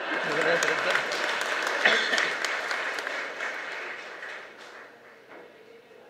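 Audience clapping, starting at once and then dying away over the last few seconds.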